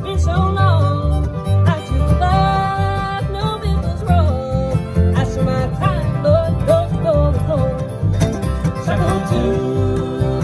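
Bluegrass band playing an instrumental passage: a sliding fiddle melody over mandolin, two acoustic guitars and upright bass keeping a steady beat.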